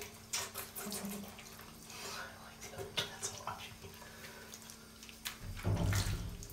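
Water from a handheld shower splashing and dripping in a bathtub as a wet cat is washed: scattered small splashes and drips over a faint steady hum, then a louder, low rushing from about five and a half seconds in.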